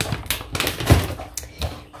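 Plastic shopping bag rustling and crinkling as groceries inside are handled and shifted, with a few sharp clicks and knocks of packages.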